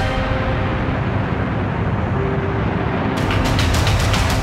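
Background music with a low rumbling drone and a held note, then a quick run of sharp percussive hits starting about three seconds in.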